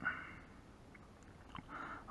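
Faint, steady trickle of old engine oil draining from the open sump drain hole of a Lexmoto XTRS 125 motorcycle into a drain tub.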